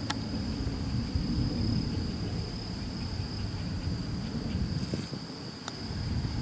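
A steady high-pitched insect trill, typical of crickets, over a low background rumble. A short click sounds at the start, and near the end a single sharp click of a putter striking a golf ball.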